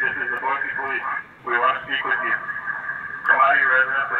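Unclear speech through a police radio speaker, thin and muffled, in a run of short phrases.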